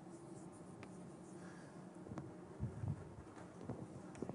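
A lecturer writing on a board: faint, scattered taps and scratches, with a few low knocks about two and a half to three seconds in, over a steady low room hum.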